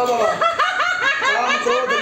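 A woman laughing hard in quick, high-pitched repeated bursts, several a second.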